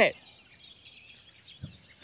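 Faint outdoor ambience with birds chirping softly, and a soft low thump about one and a half seconds in.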